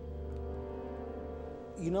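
Film score holding a sustained low chord over a steady low rumble, as a tense pause. Near the end a man starts speaking.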